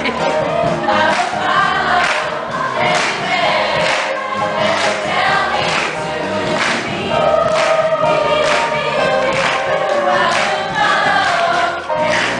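A school choir of girls' voices singing together over a steady beat that falls about once a second.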